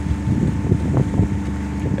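Steady low hum of a small sailboat underway, with wind rumbling on the microphone.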